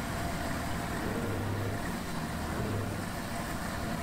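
Engine of a nori harvesting boat at work, running steadily with a low hum that wavers a little in pitch.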